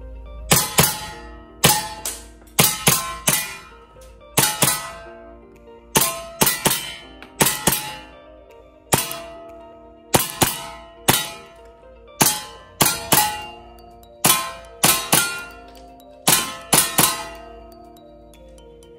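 Action Army AAP-01 gas blowback airsoft pistol firing on semi-auto: about thirty sharp cracks in irregular clusters, some in quick pairs, each with a ringing tail.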